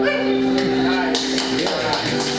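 An acoustic folk band's last chord (acoustic guitars, bass and harmonica) held and then stopping about a second and a half in. A few sharp claps come in over its end.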